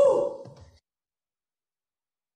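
A short wordless cry from a performer's voice, its pitch falling and then rising, cut off suddenly less than a second in.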